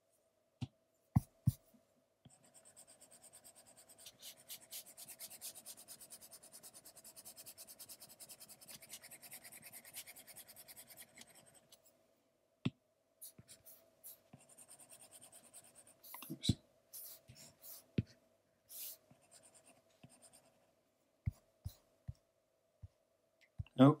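Stylus tip on an iPad's glass screen: a few sharp taps, then about ten seconds of rapid, fine back-and-forth scratching strokes as an area is shaded, then scattered taps and short strokes.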